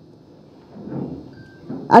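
A pause in a woman's speech into a microphone, with a brief soft noise about a second in; her speech starts again at the very end.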